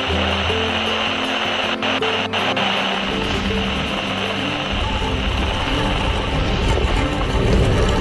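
Music with held, sustained notes over a steady hissing wash; a deep bass comes in about halfway through.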